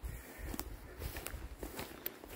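A hiker's footsteps on grass, faint, with a few short light clicks and a low rumble underneath.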